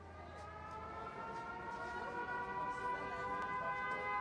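Air-raid siren winding up: a chord of wailing tones fades in and rises in pitch and loudness, levelling off about two seconds in.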